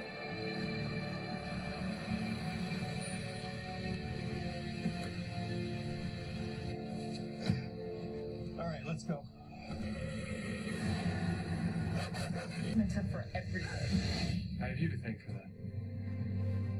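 Dramatic TV-drama score: sustained held chords over a low rumble. The music dips briefly about nine seconds in, then turns more broken toward the end, with faint dialogue under it.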